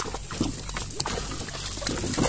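Horse-drawn cart on the move: scattered, irregular knocks and clicks from hooves, harness and the wooden cart over a steady low rumble.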